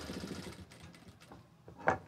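Industrial sewing machine stitching through fabric for under a second, then slowing and stopping. A short, sharp sound comes near the end.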